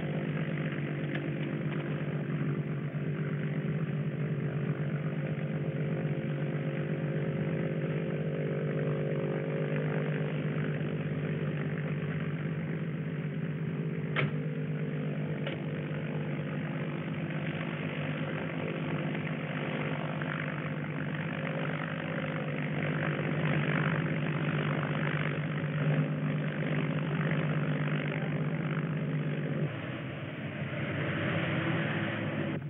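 A steady engine drone holding one pitch throughout, with two short sharp clicks a little past the middle.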